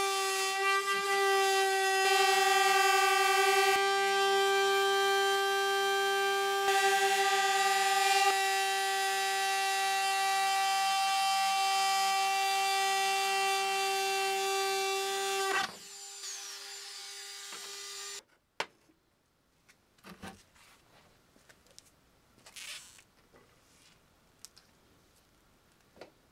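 Ryobi rotary cutter running with a steady high-pitched whine as its bit cuts a round hole through a plastic trash-bin lid. About 15 seconds in the cutting noise drops away, the motor whines on more quietly for a couple of seconds and then stops, followed by a few faint knocks.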